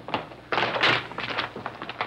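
A quick run of thumps and scuffles: boots of several soldiers hurrying across a wooden floor to a fallen man, loudest about half a second to a second in.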